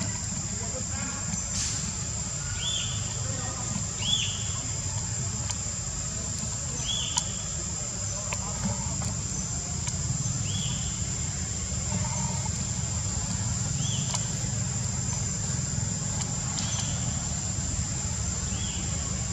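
Outdoor ambience: a steady high-pitched drone and a low rumble underneath, with a short high call repeated about six times, one every two to four seconds.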